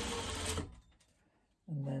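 JUKI sewing machine running in a short burst of stitching that stops within the first second, going back and forth to lock the end of a seam.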